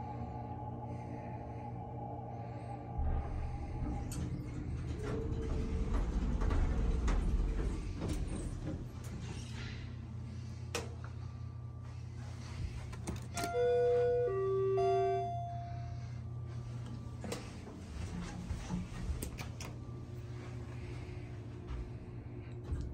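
Hydraulic passenger elevator: a steady low hum in the cab, swelling to a louder rumble a few seconds in as the car moves and stops. About two-thirds of the way through, a short electronic chime of a few notes steps down in pitch.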